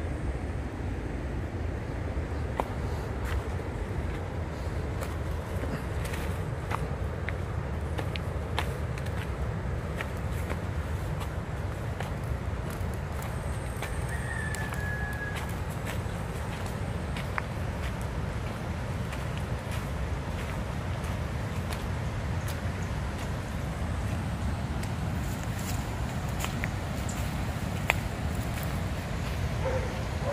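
Steady rushing of a distant, flood-swollen river, with scattered footsteps on the path and one brief bird chirp about halfway through.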